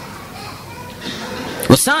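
Faint background voices during a pause in a sermon, then the preacher's loud voice starts again just before the end.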